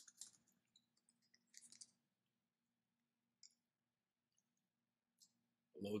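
Faint computer-keyboard clicks as a web address is typed: a quick run of keystrokes over the first two seconds, then a few single clicks spaced out.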